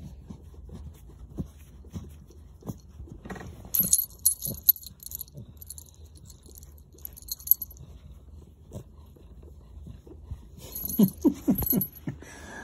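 A cat grunting in short low sounds while the small bell on her collar jingles as it is handled. The jingling comes in a spell from about four seconds in and again near the end, where it joins a quick run of falling grunts.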